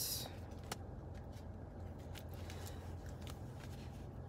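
Tarot cards being shuffled by hand: a short rustle of cards at the start, then scattered soft clicks and flicks of cards.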